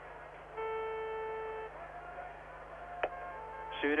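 A steady pitched tone, like a horn or beep, held for about a second, then a fainter, higher tone with a single sharp click near three seconds in, over a faint steady hum on the old recording.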